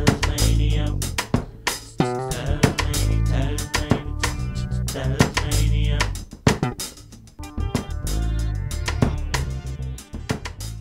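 Instrumental band music without vocals: bass guitar, guitar and drum kit playing a funky groove, with a short dip in the playing a little after halfway.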